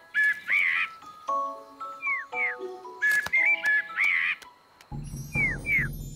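Cartoon bird chirps, short whistled cheeps that sweep downward, sounding again and again over light, tinkling music. About five seconds in, a deep low hum starts up under the chirps.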